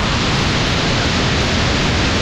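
Freefall wind rushing over the camera's microphone during a tandem skydive: a loud, steady, unbroken rush of noise.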